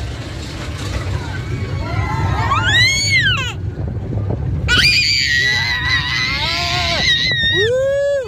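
A young child screaming with delight on a roller coaster, over the steady rumble of the moving coaster train. There is one high rising-and-falling squeal, then a long, held high scream, then shorter cries near the end.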